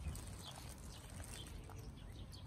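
Faint rustling and light clicks of tomato plants being handled while small tomatoes are picked by hand among the leaves and netting.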